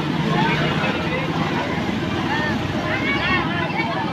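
Street noise: a motor engine running steadily close by and stopping near the end, under people talking.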